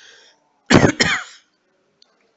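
A man clearing his throat in two short, loud bursts, about three-quarters of a second in, after a faint breath.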